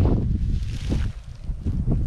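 Wind buffeting the microphone: a heavy low rumble that eases briefly a little past a second in.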